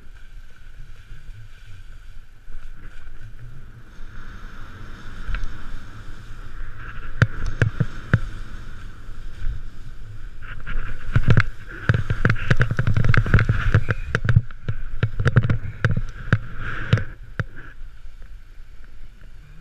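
Snowboard sliding and carving down a snow slope, its base hissing and scraping through the snow over a low rumble, as picked up by a camera worn by the rider. From about halfway through it gets louder, with a quick run of knocks and scrapes as the board turns through the snow.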